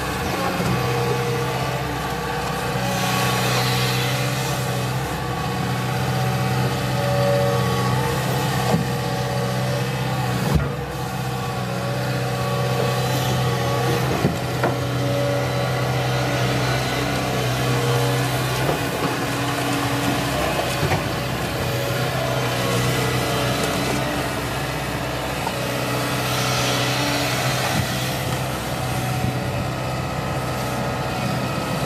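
JCB tracked hydraulic excavator's diesel engine running steadily while it works its boom and bucket, with a few sharp knocks along the way. The engine note shifts a little a bit over halfway through.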